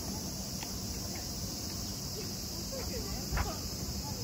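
Steady high-pitched drone of an insect chorus, with faint distant voices.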